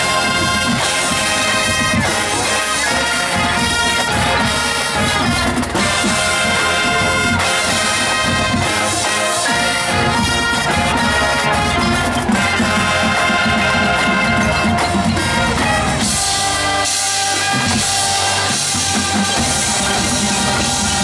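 High school marching band playing: a brass section led by trumpets over marching bass drums and snare drums, loud and continuous. The lowest notes thin out for a moment near the end before the full band comes back in.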